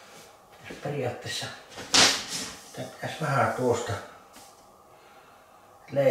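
A man muttering low, unclear speech, with one sharp knock about two seconds in that is the loudest sound. The rest is quiet room tone.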